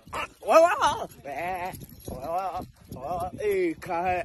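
A man's voice making several drawn-out vocal sounds with a quick, quavering wobble in pitch, separated by short pauses.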